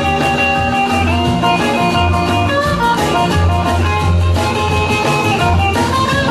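Live rock and roll band playing an instrumental passage led by a hollow-body archtop electric guitar, over a steady bass line and drums.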